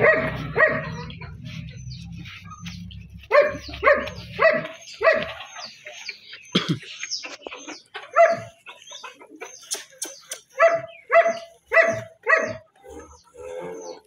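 White Russian pink-nose puppies yipping: about a dozen short, high-pitched yips, some in quick pairs and runs, with quiet gaps between. A low steady hum sits under the first few seconds and fades out.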